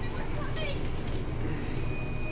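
Horror-film sound effects of a storm: a steady rushing wind noise over a low rumble, with thin high whining tones coming in near the end.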